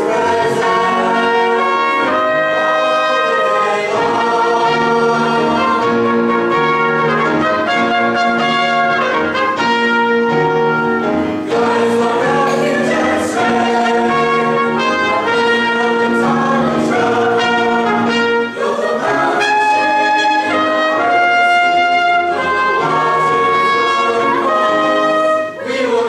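High school mixed choir singing a sacred anthem with instrumental accompaniment: loud, sustained chords that move on every second or so without a break.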